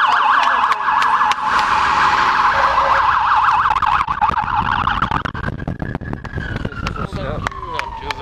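Police car siren in a fast warbling yelp, which changes about five seconds in to a single slow wail that falls in pitch as it winds down.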